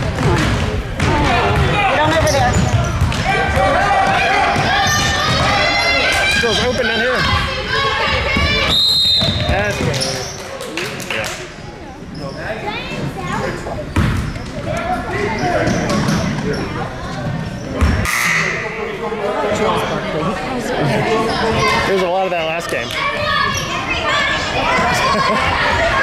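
Indoor gym sounds of a youth basketball game: spectators and players shouting and cheering without clear words, and a basketball bouncing on the hardwood floor. A short, high whistle blast from the referee comes about nine seconds in.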